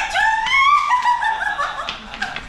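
A woman laughing excitedly in quick, high-pitched bursts.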